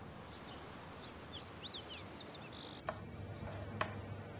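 Several birds chirping briefly over faint outdoor ambience. About three seconds in, this gives way to a quieter room with two sharp knocks about a second apart, a knife striking a cutting board as cucumbers are sliced.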